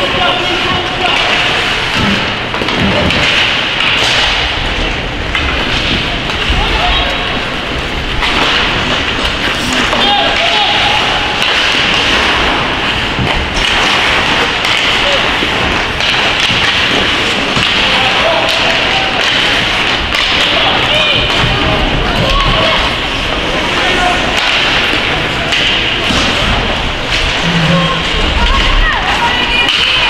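Ice hockey game ambience: voices shouting and calling out across the rink, with occasional thuds from the puck and players against the boards.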